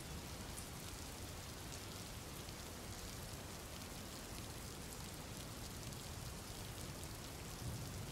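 Faint, steady rain falling: a background track of recorded rain.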